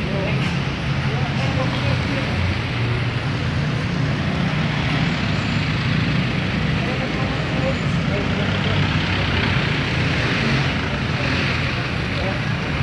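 Steady road traffic noise from cars passing close by on the terminal access road, with faint background voices.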